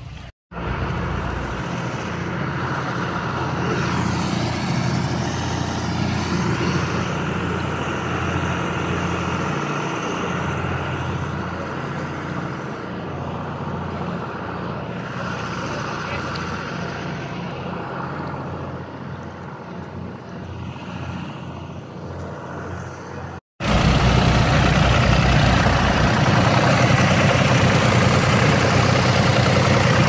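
An engine running steadily at an even speed. After a sudden break near the end, a louder engine runs close by, powering a trailer-mounted fire-service water pump that is pumping out floodwater.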